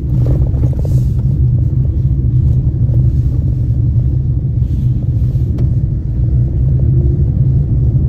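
Steady low rumble of a car driving slowly, engine and tyre noise heard from inside the cabin.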